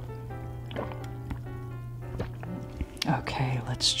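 Close-miked gulps and swallows of a drink, with a few short wet clicks of the mouth and throat, over soft background music.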